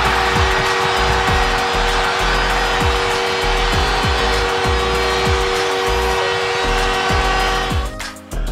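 Arena crowd cheering with a goal horn sounding steadily on two tones, signalling a home-team goal, over an instrumental backing track with deep kick drums. The crowd noise and the horn cut off abruptly near the end.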